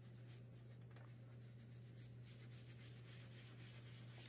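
Faint brushing: a wooden-handled bristle brush rubbing over a leather bag tab in light, irregular strokes, over a low steady hum.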